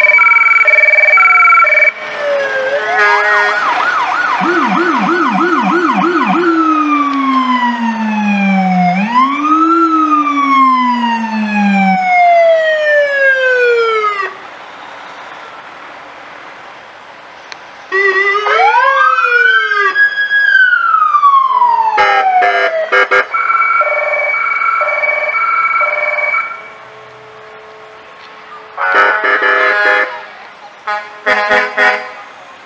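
Electronic sirens on passing police and fire vehicles cycling through their tones. It opens with a pulsing two-tone horn, then comes a rising wail, a fast yelp of about four cycles a second, and long falling and rise-and-fall wails. After a quieter stretch another wail rises and falls, followed by more pulsing horn tones.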